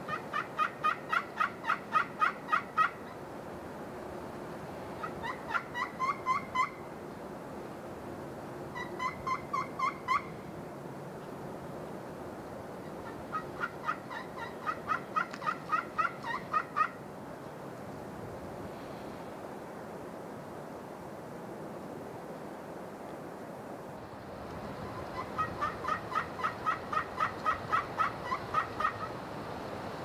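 Turkey yelps in five runs of quick, evenly spaced notes, about five a second, each run lasting one to four seconds.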